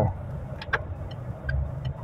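Inside a moving car's cabin: the low, steady rumble of the engine and tyres while driving, with one light click about two-thirds of a second in.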